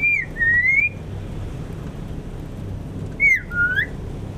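Caged common hill myna whistling: a two-part whistle, a falling note then a rising one, given twice about three seconds apart, over a steady low hum.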